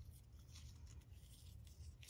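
Near silence, with only a faint rustle of paper stamp stickers being shuffled through by hand.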